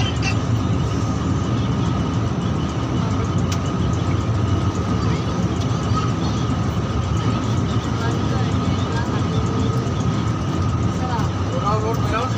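Steady drone of a bus's engine and tyres heard from inside the moving bus at highway speed, with a thin steady whine over it.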